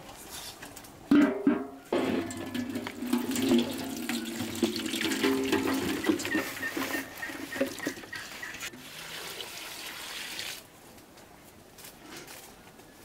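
A large metal pan clanks onto its iron stand about a second in, then a bowlful of wild mushrooms is tipped into it, rustling and rattling against the ringing metal for several seconds before stopping near the end.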